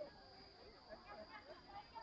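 Faint chatter of people's voices in the background, with a steady high-pitched tone underneath.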